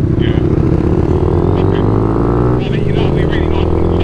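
Motorcycle engine accelerating from the rider's own bike, its note rising for a couple of seconds, then falling at a gear change about two and a half seconds in before pulling on more steadily.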